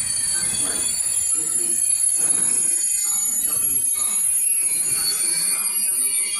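Curtain-sided freight wagons rolling steadily past on the track, their wheels giving a continuous high-pitched squeal over the rumble of the train.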